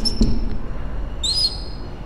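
Marker pen squeaking on a whiteboard in short strokes while writing: a brief high squeak at the start and a longer one a little over a second in.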